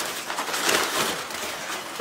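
Packaging rustling steadily as it is handled and pulled off a product.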